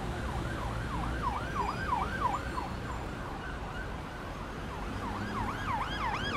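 A siren yelping: a quick up-and-down wail repeating about three times a second. It fades in the middle and comes back stronger near the end, over a low steady rumble.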